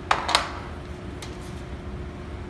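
A small painted sheet-metal piece set down on a bench: two quick knocks close together, then a faint tick about a second later.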